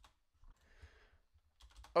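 Faint, scattered taps on a computer keyboard, with a soft hiss about a second in.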